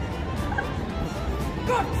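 Steady low rumble of city street noise, with faint women's voices and laughter rising near the end.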